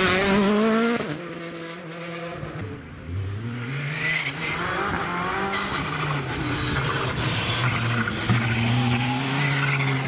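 Rally car engines on a stage: a Hyundai i20 WRC car accelerating away, its engine loud and then falling off about a second in. From about three seconds in, a second rally car's engine is heard approaching, rising in pitch and growing louder.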